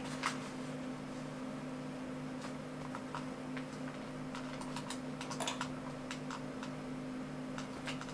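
Irregular light clicks from working a computer's controls, more of them about four to five and a half seconds in, over a steady low electrical hum.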